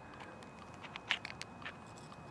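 A few faint, short clicks and taps, clustered about a second in, over a quiet outdoor background: handling noise as flashlights are picked up and swapped in the hand.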